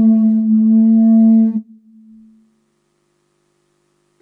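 A single held musical note, steady in pitch, that stops about one and a half seconds in and fades out. Then it is quiet until a short, louder note sounds just after the end.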